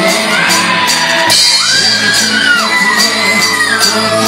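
Live band music with a singer's voice over a steady beat with regular high percussion strokes, and shouts and whoops from a large crowd; a long high note is held through the second half.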